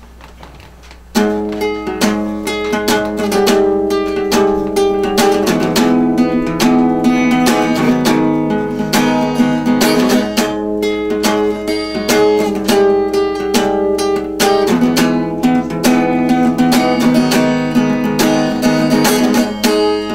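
Solo acoustic guitar with a capo playing the instrumental opening of a song in a quick, steady rhythm of plucked and strummed notes, starting about a second in.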